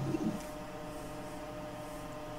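Steady low electrical hum, with a short low sound in the first half-second.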